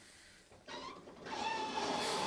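Railway locomotive starting up: a short burst of noise, then a loud rushing sound with a steady whine through it, swelling about a second and a half in.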